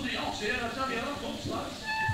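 High, bending voices calling out between songs in a theatre, on a cassette audience recording. A held instrument note starts near the end.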